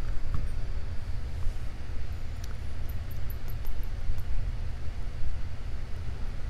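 A steady low rumble, with a few faint light clicks from handling the picked lock cylinder's metal plug and housing.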